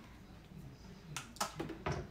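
A plastic water bottle being handled and set down: a quick cluster of clicks and knocks in the second half.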